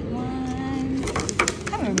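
A voice holds a drawn-out hum. Then, in the second half, several sharp crackles and clicks come from a thin clear plastic clamshell food box being handled.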